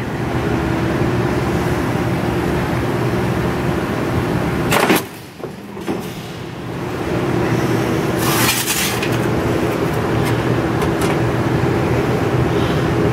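Cincinnati mechanical plate shear running with a steady hum from its flywheel drive; about five seconds in the blade makes one stroke, shearing a strip of 18-gauge sheet with a sharp crack. The running sound dips right after the cut and comes back, with a short hiss a few seconds later.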